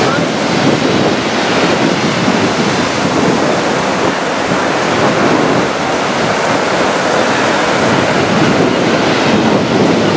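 Heavy surf from a rough sea breaking along a shingle beach, a steady rush of waves, with wind buffeting the microphone.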